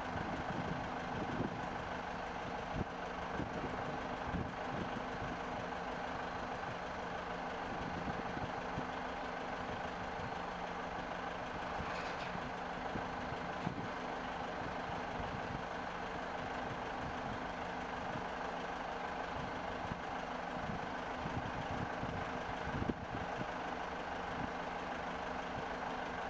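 Steady low engine hum, like a heavy diesel idling, with a few faint knocks scattered through it.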